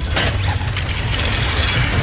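Chain hoist let go: the chain runs out fast through the pulley block with a rapid ratcheting clatter, over a low rumble of fire.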